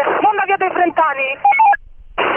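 A voice over police two-way radio, which cuts off abruptly near the end.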